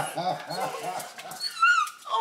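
Small dog crying in excitement at its owners coming home, with one high-pitched whine near the end.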